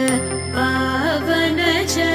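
Background music in an Indian style: a wavering, ornamented melody over a steady low drone, with a short pause in the melody early on.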